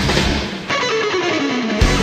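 Heavy rock music with electric guitar. About half a second in, the bass and drums drop out and a single note slides steadily down in pitch, then the full band comes back in near the end.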